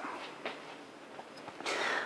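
Quiet room tone with a faint hiss, ending with a man's short in-breath just before he speaks again.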